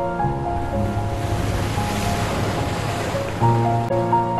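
An ocean wave washing in and drawing back: a hiss that swells to a peak about halfway through and fades, over soft ambient background music with a low held note. The melody's repeating notes drop away under the wave and return strongly near the end.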